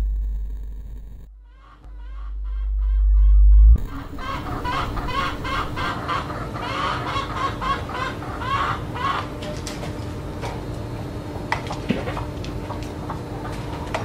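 A loud, deep electronic sound effect fades and then swells, cutting off suddenly at about four seconds. It gives way to chickens clucking repeatedly, with a few sharp clicks near the end.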